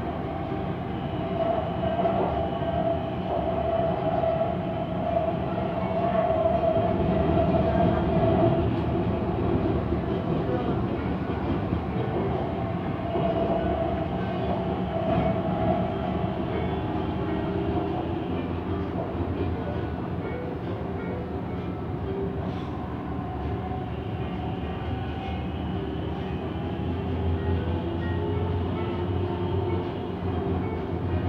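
Siemens Inspiro metro train running at speed through a tunnel, heard from inside the driver's cab: a steady rumble of wheels and running gear. A flat humming tone comes through over the first third and again around the middle.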